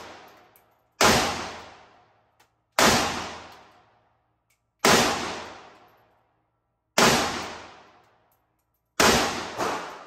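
AK-47 rifle firing slow single shots, five bangs about two seconds apart, each ringing out in a long echo down the enclosed range lane; a smaller bang follows just after the last shot.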